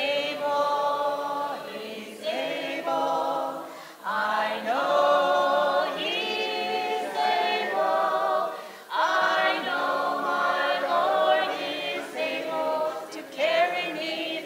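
Women's voices singing a gospel song unaccompanied into a microphone, in phrases of long held notes.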